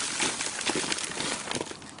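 Semi-composted horse manure poured from a bucket into a cardboard box: a steady rustling hiss of loose material landing, with small ticks, loudest at first and tailing off toward the end.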